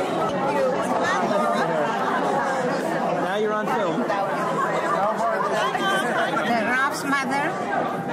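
Crowd chatter: many guests talking at once, overlapping voices with no single one clear, at a steady level.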